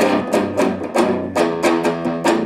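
Electric guitar played through a DIY clone of the Way Huge Red Llama overdrive pedal, the version built with more low end: overdriven chords struck in a quick rhythm, about three a second.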